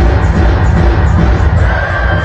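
Loud live concert music over a PA, with a heavy bass beat and singing throughout.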